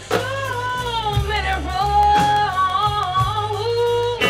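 Live blues band: a woman sings one long vocal phrase with bending, sliding pitch, ending on a higher held note that cuts off near the end. Electric bass and drums play underneath.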